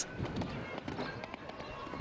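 Hoofbeats of a show-jumping horse galloping on a sand arena: a quick, uneven run of short thuds.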